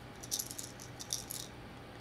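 The internal rattle beads of a hand-painted lipless crankbait clicking as the lure is turned over in a gloved hand: a few short, high bursts of rattling.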